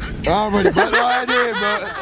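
Young men laughing and chuckling, with voices over a low steady hum inside a van.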